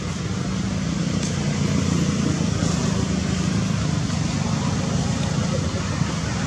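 Steady low rumble and hiss of distant road traffic, with a faint engine hum in the middle.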